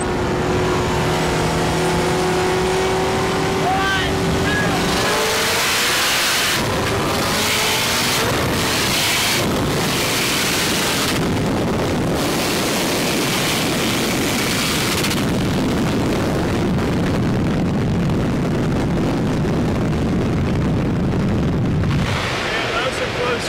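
A Corvette ZR1's V8 and a turbocharged K20 four-cylinder in an Acura RSX, side by side. They cruise at a steady roll speed, then about five seconds in both go to full throttle, revs climbing. A loud rush of wind and engine noise follows at high speed, with the camera mounted outside the car.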